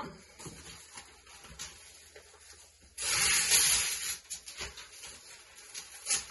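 Newspaper being torn into strips: one loud rip about three seconds in that lasts about a second, with fainter rustling of paper before and after.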